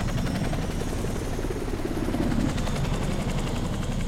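V-22 Osprey tiltrotor aircraft lifting off, its rotors beating in a fast, steady chop under the engines' drone. The sound swells about two seconds in as it climbs away.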